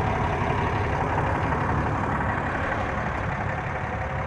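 6.7-litre Cummins diesel idling steadily, a low pulsing rumble that fades slightly near the end.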